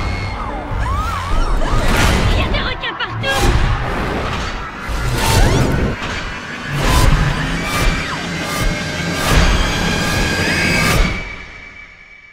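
Film trailer score and sound design: a run of heavy booming hits over a rumbling low bed, coming closer together as it goes. Near the end a high held tone rings on and the whole thing fades out.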